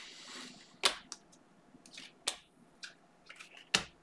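Glossy chromium Mosaic football cards being slid one by one from the front to the back of a hand-held stack: a handful of sharp, irregular clicks and soft card-on-card slides, the loudest click near the end.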